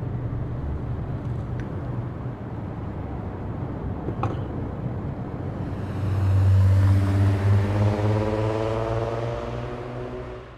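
Steady low road and engine rumble of a moving car. From about six seconds in, a louder vehicle engine comes up, its pitch drifting slightly lower as it goes by.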